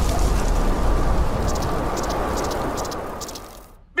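Cartoon sound effect of a shockwave of wind blasting through trees: a rushing, rumbling noise that dies away over the few seconds and is almost gone by the end.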